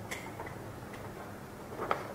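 A sheet of paper being folded in half and handled: a few short, soft crackles, the loudest near the end.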